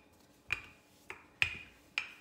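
Wooden rolling pin working pie dough on a floured granite countertop, giving four short sharp clicks about half a second apart.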